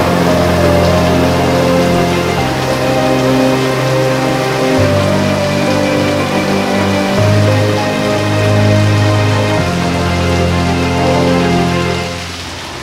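Heavy rain falling steadily, under a slow background score of held low chords that change about every two and a half seconds.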